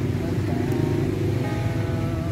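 Acoustic guitar music with a sustained melody, over a steady rumble of road traffic.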